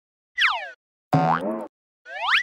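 Cartoon-style sound effects from an animated logo sting. About half a second in, a quick tone glides downward in pitch. About a second in comes a louder, longer pitched tone that rises and then wobbles.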